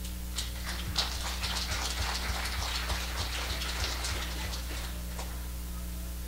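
Scattered hand clapping from a few people, irregular claps for about five seconds, starting just after the beginning and stopping near the end.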